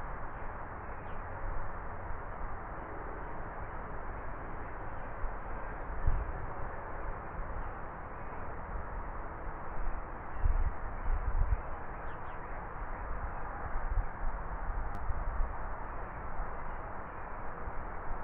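Outdoor ambience: a steady hiss with a few low bumps, about six seconds in and again around ten to eleven seconds in.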